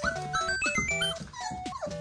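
Wolfdog puppies whimpering, several short rising-and-falling cries, over background music.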